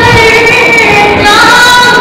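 A woman singing into a microphone, holding long notes and stepping up to a higher note about a second and a half in.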